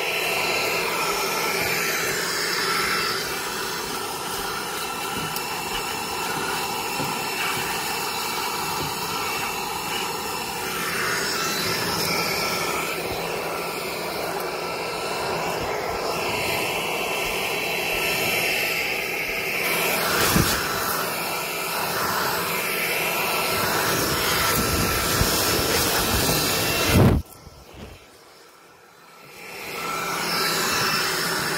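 Handheld leaf blower running steadily, a rushing fan sound with a faint whine. There is a sharp knock about two-thirds of the way through and another near the end, after which the blower cuts out for about two seconds and then starts up again.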